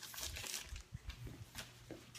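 Rustling and a few light, scattered taps from a cardboard shipping box being handled.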